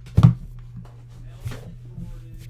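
Coughing: one sharp cough just after the start and a softer second one about a second and a half in, over a steady low hum.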